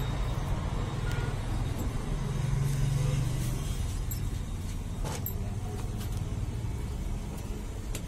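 Steady low rumble of street traffic, with a light click about five seconds in.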